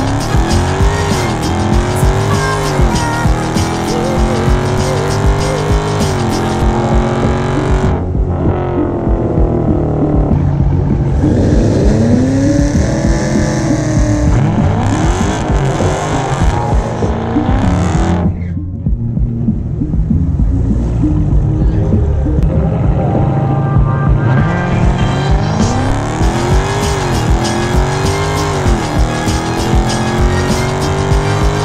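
Dodge Charger's HEMI V8 running hard on drag-strip passes: the engine note climbs and drops back at each gear change, with tire squeal. The engine quietens in the middle and pulls hard again through the gears near the end, with music playing underneath.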